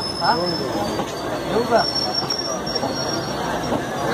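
Blue Indian Railways passenger coaches of a crossing train rolling past close alongside: a steady rolling rumble, with thin high wheel squeals setting in about one and a half seconds in.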